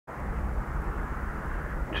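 Steady rumble of distant road traffic.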